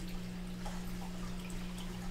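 Room tone: a steady low hum with faint hiss, and no other clear sound.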